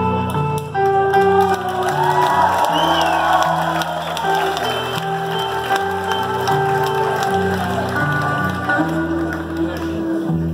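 Live band playing an instrumental passage of held guitar and bass notes that change about once a second, with a crowd cheering and shouting over it in the first few seconds.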